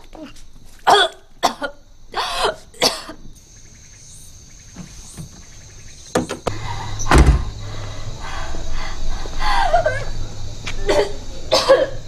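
A woman coughing in several short, harsh fits, with a loud dull thump about seven seconds in.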